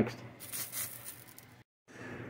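Faint room noise with a few soft handling sounds, broken near the end by a moment of dead silence where the recording was cut.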